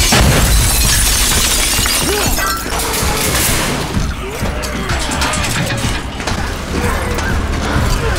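Soundtrack of a TV horror drama's action scene: a loud, continuous wash of noise with music under it.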